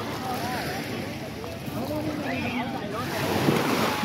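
Lakeside beach ambience: scattered voices of people in and around the water chattering over a steady wash of noise. Near the end a louder rush of noise swells.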